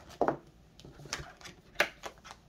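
Tarot cards being handled as one is drawn from the deck: short, sharp snaps and taps, two louder ones, about a quarter of a second in and near the end.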